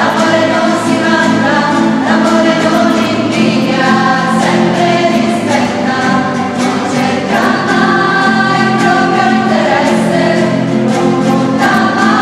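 Women's voices singing a hymn together, accompanied by acoustic guitars.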